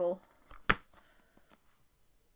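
A paperback book handled and shut: a faint papery rustle, then one sharp slap of the covers closing about two-thirds of a second in.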